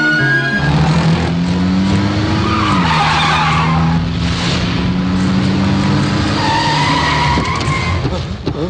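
Car engine revving and tyres skidding as a sedan speeds in and pulls up hard. The engine pitch climbs and then drops about three seconds in, with tyre squeal around then and again near the end.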